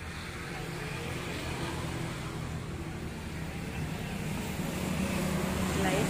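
A motor vehicle's engine running with a low steady hum, growing steadily louder as it draws nearer.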